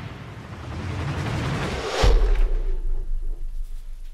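Dramatic sound-effect hit: a rising swell of noise leads into a sudden deep boom about two seconds in, and its low rumble dies away over the next second or so.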